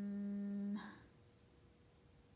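A girl's closed-mouth hum, a drawn-out "mmm" held on one steady pitch, that stops abruptly just under a second in.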